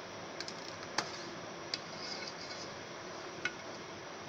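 A spoon stirring thick custard in a metal pan, knocking against the pan's side in a few sharp, scattered clicks over a steady faint hiss.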